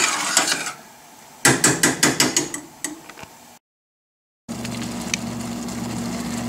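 A spoon scraping through thick tomato gravy in a stainless steel pan, then a quick run of sharp taps of the spoon against the pan. After a short break, a steady low hum runs on.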